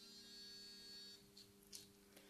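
Near silence: a faint steady mains hum, with a faint high buzz over about the first second.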